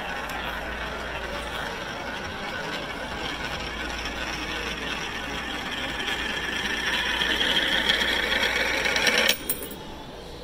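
A coin rolling around the curved plastic funnel of a coin-spiral wishing well: a steady rolling whir that grows louder and rises a little in pitch as the coin circles faster toward the centre hole, then cuts off suddenly near the end as it drops through.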